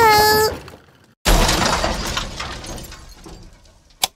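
Cartoon sound effects: a short pained cry at the very start, then about a second in a sudden loud crash with shattering that fades away over the next few seconds.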